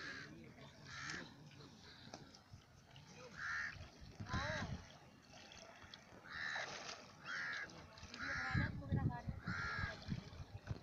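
A crow cawing repeatedly, about seven short caws spread through, over faint people's voices. A louder low rumble comes near the end.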